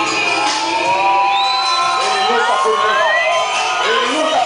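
Live band music playing with the audience cheering and whooping over it.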